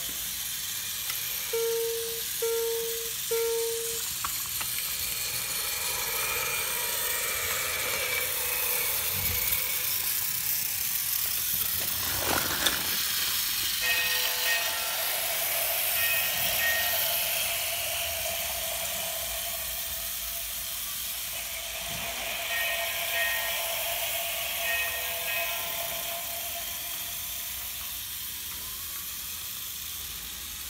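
GeoTrax battery-powered remote-control toy trains and plane running on plastic track, with a steady whir of small motors and gears. Electronic toy sound effects play over it: three short tones about two seconds in, and a longer held tone with a repeating higher pattern from about halfway through.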